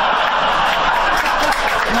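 Live audience laughing and clapping after a punchline, a steady crowd noise.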